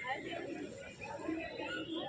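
Indistinct voices of people talking nearby, with no other distinct sound.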